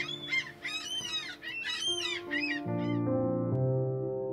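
Wild birds outside calling over and over, short high arched calls several a second. About two and a half seconds in, music with sustained keyboard chords comes in and takes over.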